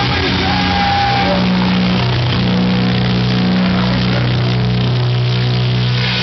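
Hardcore punk band playing live and loud: distorted guitars and bass over drums, with a low chord held steady from about two seconds in.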